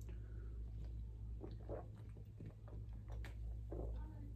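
A person drinking from an aluminium can: several soft, faint swallows.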